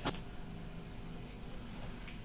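Quiet room tone with a faint steady hum, after a single short click at the very start.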